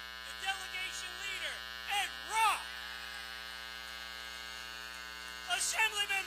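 Steady electrical mains hum and buzz in the sound-system feed. Short voice-like calls that rise and fall in pitch come over it several times in the first two and a half seconds and again near the end, fitting cheering from the stage group.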